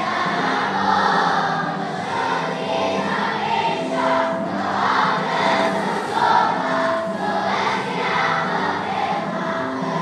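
A children's choir singing a Christmas song in unison, with held notes changing pitch every half second or so.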